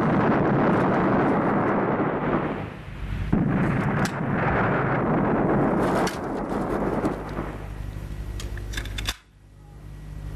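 Sustained machine-gun fire in a film gunfight: a continuous dense roar of shots that dips briefly about three seconds in, with sharper cracks standing out. It thins in the second half over a steady low hum and cuts away just before the end.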